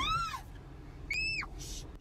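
Two short, high-pitched cries from a person, each rising then falling in pitch: one at the very start and a higher one about a second in, over a low rumble.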